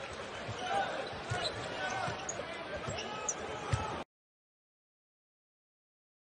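Basketball game sound: steady crowd murmur in a large arena with a few short knocks of a basketball being dribbled on a hardwood court. The sound cuts off abruptly to silence about four seconds in.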